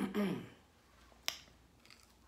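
A drawn-out spoken "a", then a single sharp click a little over a second in and a fainter one near the end, mouth or utensil clicks while eating.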